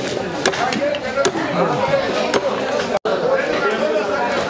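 Sharp chopping strikes of a blade on a fish being scaled and cut, about one a second, over steady chatter of voices. The sound breaks off for an instant about three seconds in.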